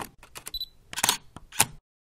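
Camera sound effects for a logo animation: a run of DSLR shutter clicks, with a short high beep about half a second in and two sharper shutter clicks near the end.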